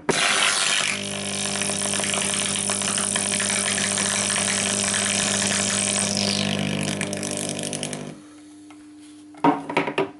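Carbon arc of a SIP carbon-arc brazing torch burning at 80 amps between two carbon electrodes. It is a loud crackling hiss over a steady mains buzz, struck at the start and cut off suddenly about eight seconds in.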